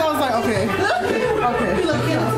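Many voices chattering at once, with music playing underneath.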